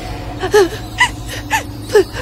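A woman gasping in four short breaths, about two a second, over a low steady hum.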